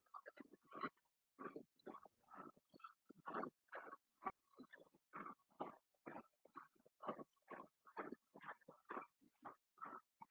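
Faint soundtrack of a promotional video playing on a computer, relayed through a video call and cut into short, choppy bursts about two or three times a second.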